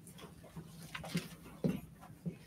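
Thin Bible pages rustling as they are turned while looking for a passage, with a few short soft thumps in between, the loudest about one and a half seconds in.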